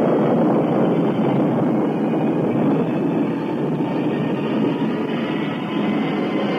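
Rocket blast-off sound effect from an old radio broadcast: a loud, steady roar of rocket engines, dull-toned with little treble.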